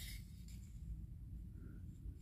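Quiet room tone: a faint low rumble, with no distinct handling clicks.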